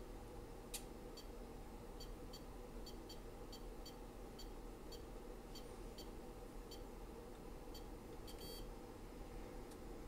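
Faint short electronic beeps from bench test equipment, about two a second, with a longer beep near the end, as the test signal is stepped down and the analyzer auto-ranges to lower ranges. A steady low hum runs underneath.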